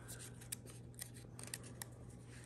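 Small folded paper slip being unfolded between the fingers: faint, scattered paper crinkles and ticks.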